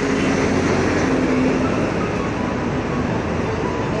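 Road traffic with a red double-decker bus driving past close by: a loud, steady rumble of engine and road noise.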